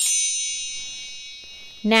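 A chime sound effect: a quick shimmering sweep into many high bell-like tones that ring on together and fade slowly, serving as a magic cue for the cap of darkness being turned round. Speech starts again near the end.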